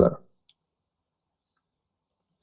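The end of a man's spoken word, then near silence with two faint, short clicks, one about half a second in and a fainter one about a second and a half in.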